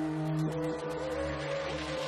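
Electronic synthesizer music: sustained drone tones whose upper line steps up in pitch in short jumps, over a throbbing low pulse.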